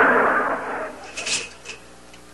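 Studio audience laughter after a punchline, fading out within the first second. A few short, faint crackles follow near the middle.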